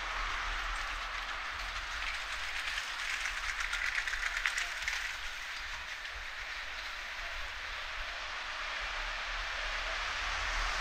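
Street ambience in a narrow town street, with a rattling, rolling sound that swells to a peak about four seconds in and then fades.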